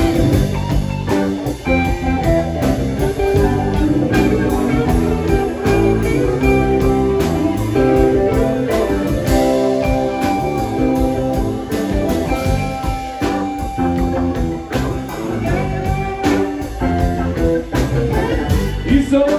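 Live rock band playing an instrumental passage: interweaving electric guitar lines over drum kit, with no singing.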